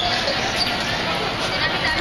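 Indistinct voices of people talking, mixed with low thuds from footsteps hurrying along a concrete walkway.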